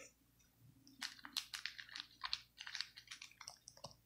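Faint, irregular crinkles and clicks of a Topps Chrome foil card pack being picked up and handled, starting about a second in.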